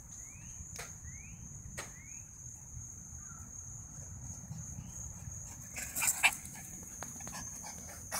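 Small dog barking, loudest in a short cluster about six seconds in, over a steady high-pitched insect drone. A few short rising chirps sound in the first two seconds.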